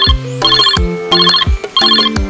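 Mobile phone ringtone: short electronic trills repeating about every two-thirds of a second, four of them, over background music with a bass line and beat.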